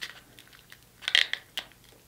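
Kitchen shears cutting through a king crab leg's shell: a few short cracks, the loudest about a second in.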